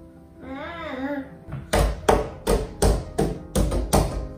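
A toddler's open hand slapping a window pane over and over: about eight sharp smacks on the glass, roughly three a second, starting a little under two seconds in.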